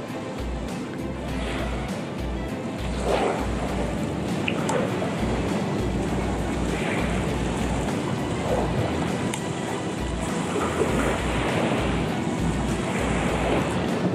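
Wind buffeting the camera microphone in uneven low gusts over a steady outdoor rush of noise.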